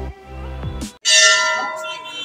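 Background music that cuts off about a second in, followed by a metal temple bell struck once, ringing loudly and slowly fading.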